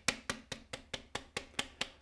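Hand tapping on the rim of a stacked brass laboratory sieve, quick even taps at about five a second, shaking fern spores down through the fine mesh.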